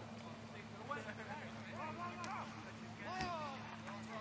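A few short shouted calls from voices some way off, several falling in pitch, over a steady low hum.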